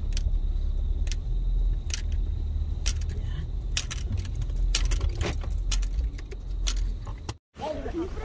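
Low rumble inside a car's cabin as it pulls slowly into a parking space, with irregular sharp clicks scattered through it. The sound cuts off suddenly for a moment near the end.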